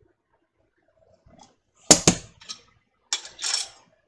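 Glass and metal clinks from home canning gear as a hot sanitized jar and canning funnel are handled. Two quick sharp clinks come about halfway through, then a lighter tick, then another clink with a brief scraping rustle near the end.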